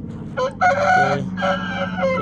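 A rooster crowing: one long crow that starts about half a second in, dips briefly near the one-second mark and carries on to the end.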